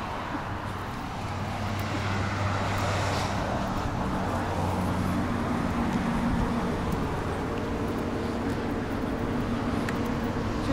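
A steady, low mechanical hum made of a few even tones, growing stronger about a second in, over a background of road traffic.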